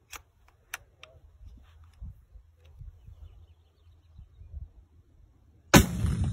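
A couple of light clicks over faint wind, then near the end an AT4 shoulder-fired launcher fires: a sudden loud blast that rings on.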